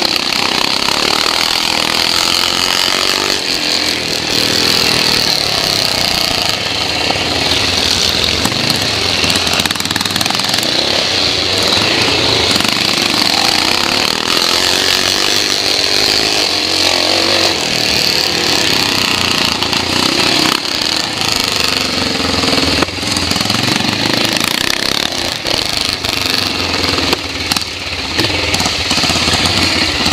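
The 441 BSA Metisse's single-cylinder four-stroke engine running loud and continuously under race throttle, heard from on board the motorcycle, with the level dipping briefly a few times.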